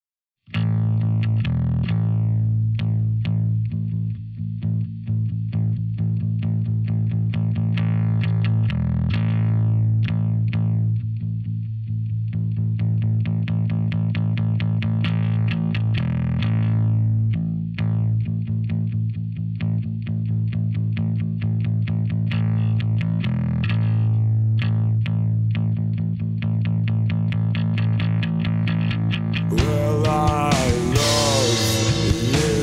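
Instrumental rock intro led by a distorted electric bass guitar run through effects, picked in a fast steady pulse on one low note, with a short change in the riff about every seven seconds. The full band comes in near the end.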